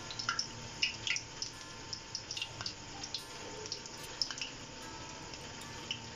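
Doughnut dough frying in lightly heated oil: a gentle sizzle with scattered small pops and crackles.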